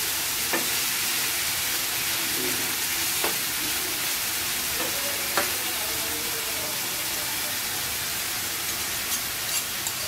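Thin-sliced marinated meat sizzling in oil in a non-stick frying pan while a spatula stirs it. The spatula knocks sharply against the pan three times in the first half, with a few lighter clicks near the end.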